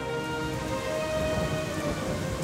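Heavy rain pouring down steadily, with soft held notes of a music score underneath.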